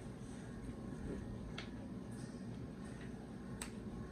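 Eating sounds at a table: two short sharp clicks, about a second and a half in and near the end, from forks and mouths over a steady low hum.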